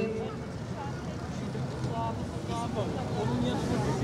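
Steady low rumble of street traffic and wind, with a few scattered voices from the crowd.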